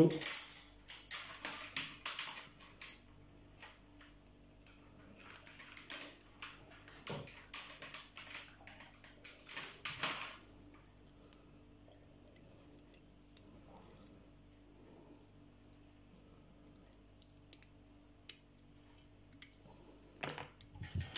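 Small clicks, taps and scratchy rustles of fly-tying tools and thread being handled at a vise, coming in scattered bursts through the first ten seconds, then only faint occasional ticks.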